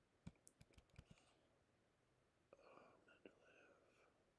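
Near silence, with a few faint clicks in the first second. Then a man whispers a short stretch under his breath, starting about two and a half seconds in.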